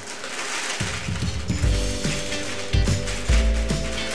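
Clear plastic bag crinkling and crackling with many small clicks as dry brownie mix is poured from it into a glass bowl. Soft background music comes in about a second and a half in.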